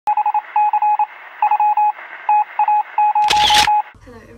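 An intro sound effect of electronic beeping: one steady tone pulsing on and off in quick groups of short and longer beeps, then a brief loud burst of noise a little after three seconds in.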